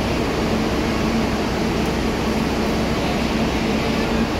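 Steady mechanical hum of a parked coach bus left running, with a faint constant low tone.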